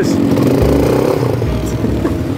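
A 250 cc quad bike's engine running, with background music playing over it.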